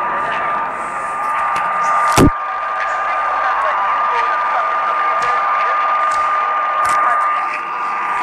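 Weak long-distance mediumwave AM reception of All India Radio on 1566 kHz: a faint, unintelligible voice buried in hiss, under a steady whistling tone, with crackles of static and one sharp crash about two seconds in.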